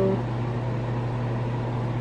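A steady mechanical hum with a low drone under an even hiss, unchanging throughout, like a running fan motor.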